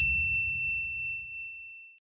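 A single bright ding from a logo sting sound effect: it strikes once and rings on one high tone, fading over about two seconds. Fainter higher overtones die away within half a second, and a low rumble fades out beneath it.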